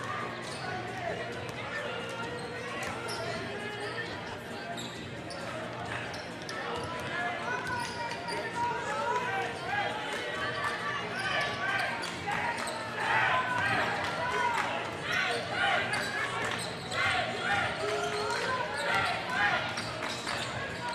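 Basketball game in a gym: many voices of players and spectators talking and calling out, getting louder about halfway through as play resumes, with a basketball bouncing on the wooden court.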